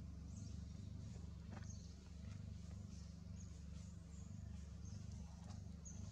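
Faint outdoor ambience: a steady low rumble with scattered faint high chirps and a few soft clicks.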